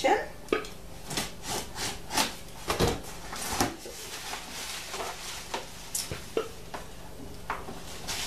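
A cardboard box being opened by hand: a string of short scrapes and crackles as the flaps are pulled open and handled, then plastic packing being lifted out and rustling near the end.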